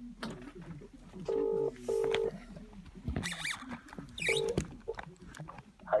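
British telephone ringback tone heard over a phone speaker: a double ring, two short steady 'brr-brr' tones, then after a pause a single ring that is cut short as the call is answered by voicemail.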